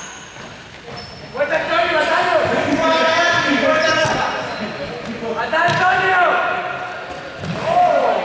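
Players' voices shouting and calling out in a large, echoing sports hall, starting about a second and a half in, with a rubber ball bouncing and thudding on the gym floor a few times.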